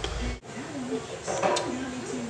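Faint, indistinct speech over room sound, broken by a brief sudden dropout about half a second in.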